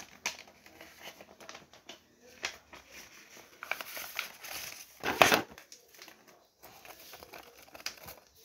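Paper rustling and crinkling as it is handled and cut with scissors, with scattered light clicks and a louder crinkle about five seconds in.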